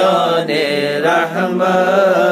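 A man's voice chanting an unaccompanied devotional naat in drawn-out, melismatic notes, over a steady low hum.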